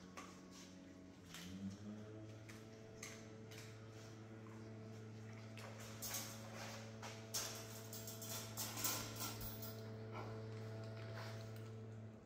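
German Shepherds crunching raw chicken drumstick bones, with sharp cracks every second or two. Behind them a small engine hums steadily; it revs up about a second and a half in and then holds. This is the gardener's power equipment working outside.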